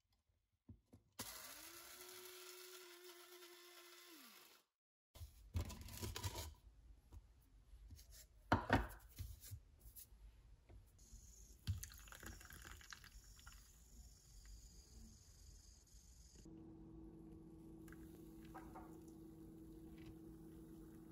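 Electric blade coffee grinder running on whole coffee beans for about three and a half seconds, its motor pitch rising as it spins up and falling as it winds down. Then a few sharp knocks and clatter as the grinder is handled, and from near the end a steady low machine hum.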